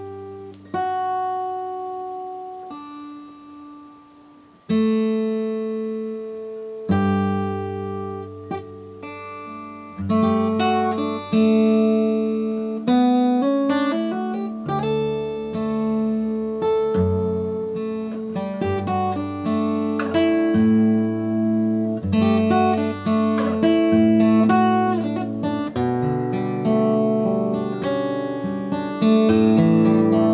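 Acoustic guitar, capoed at the first fret, fingerpicked: a few separate ringing notes and chords left to decay for the first ten seconds or so, then a continuous fingerstyle passage with a moving bass line under higher notes.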